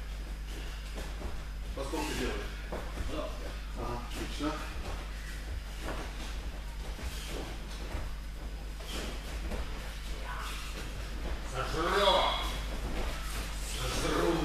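Indistinct voices talking in a large, echoing hall, over a steady low hum. The voices come in short stretches, loudest near the end.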